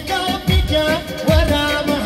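Live Kurdish dance music played loud through a PA: a man sings a wavering melody over an amplified keyboard band with a heavy, regular drum beat.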